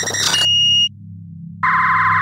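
Electronic logo sting of synth sound effects: a loud glitchy burst with high steady tones cuts off just before the first second, a low steady hum carries on beneath, and a second buzzy synth burst starts past the halfway point.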